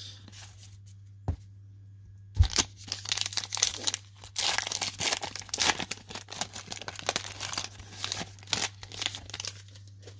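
Crinkly wrapper of a 2020 Topps Heritage Minor League baseball card pack being torn open and crumpled by hand. A sharp rip comes about two and a half seconds in, followed by about seven seconds of dense crackling, over a steady low hum.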